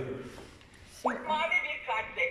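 Clementoni Doc educational robot talking through its small, thin-sounding speaker, a voice that starts about a second in after a quieter first second.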